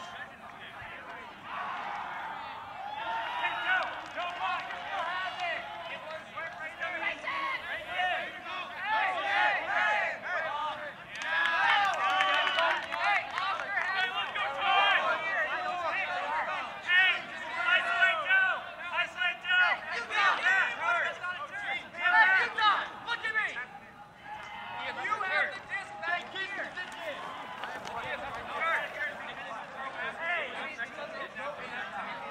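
Ultimate frisbee players' voices, several people talking and calling out at once with their words overlapping.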